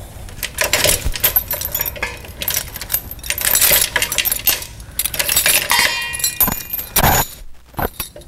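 Steel trailer safety chains and their hooks rattling and clinking as they are picked up and handled at the hitch: a run of irregular metallic clinks, with a brief ringing jingle late on.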